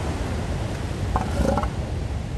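Steady rush of surf breaking on a beach, with wind noise on the microphone. A couple of short calls from sparring elephant seals come about a second in.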